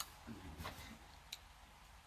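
Faint clicks and brief rustles as a small pop-up tent's nylon fabric and frame are handled and folded, with a sharp click right at the start.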